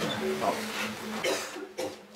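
People's voices talking in the background, with a cough.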